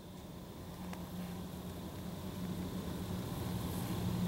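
A faint steady low hum over a background hiss, slowly growing louder, with a couple of faint clicks.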